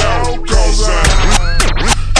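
Slowed, chopped-and-screwed hip hop beat with heavy bass, overlaid with DJ record scratching whose pitch sweeps rapidly up and down in the second half.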